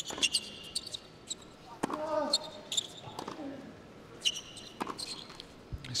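Tennis rally on an indoor hard court: racket strikes on the ball a couple of seconds apart, a player's grunt just after one shot, and short sneaker squeaks on the court surface in between.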